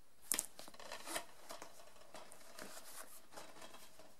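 Plastic DVD cases being handled and swapped in the hands, with a sharp click about a third of a second in, a softer one about a second in, and light taps and rustles after.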